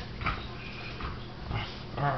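Bulldog making short vocal noises while playing: about three quick huffs and a brief high note.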